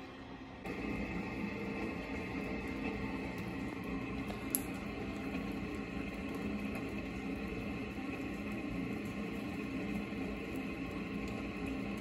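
Steady patter of rain on a wet wooden deck and yard, with a faint low hum under it and a single light click about four and a half seconds in.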